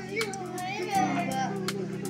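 Children chattering and laughing over background music that holds a steady low tone, with several sharp clicks scattered through.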